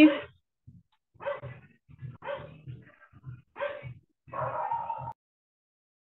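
A dog barking four times, the last bark longer, heard over a video-call line.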